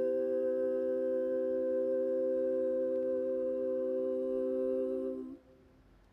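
A women's barbershop quartet holding the final chord of an a cappella song, four voices sustained in close harmony. The chord is released about five seconds in.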